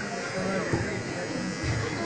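A steady buzz with faint, indistinct voices beneath it.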